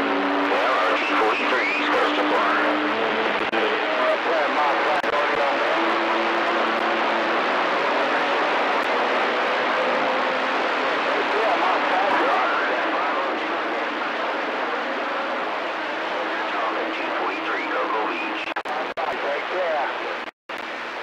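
CB radio receiver hissing with static while an incoming signal holds it open, faint unreadable voices and a couple of steady whistle tones under the noise. It cuts off suddenly at the end.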